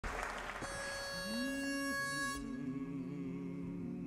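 A pitch pipe sounds one steady note for about two seconds while the barbershop quartet's voices hum and slide up onto it. After the pipe stops, the men hold a soft hummed chord: the quartet taking its starting pitches before singing.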